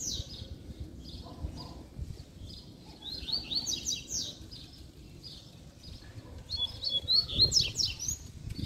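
Caged double-collared seedeaters (coleiros) singing in phrases of rapid, high notes: one burst about three seconds in and another near the end.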